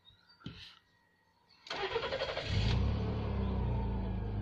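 Rover 45's 2.0-litre KV6 V6 petrol engine starting: the starter cranks for about a second, the engine catches and settles into a steady idle. This is its first start after an oil and oil-filter change.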